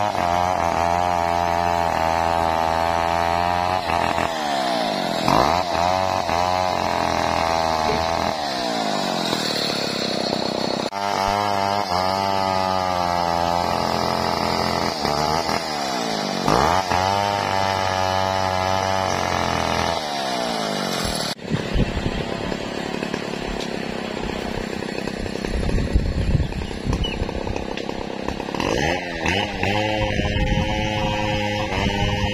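Two-stroke chainsaw cutting sengon (albizia) logs, its pitch sagging under load and climbing back several times as each cut bogs down and frees up. About two thirds of the way in it gives way to a rougher, less even noise with scattered knocks.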